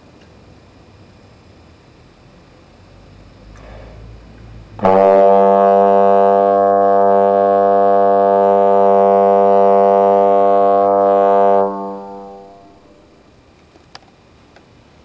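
Trombone sounding one long, steady, unwavering note that starts abruptly about five seconds in, holds for about seven seconds, then stops and fades out in the room's echo.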